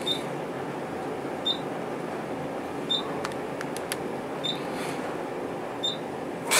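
Dover traction elevator car travelling up under steady ride noise, with a short high floor-passing beep about every second and a half as it passes each floor.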